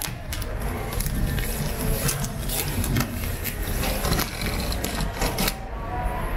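Small box cutter slicing along the packing tape of a cardboard bike box, with scraping and rustling of the cardboard and many irregular sharp clicks over a low handling rumble.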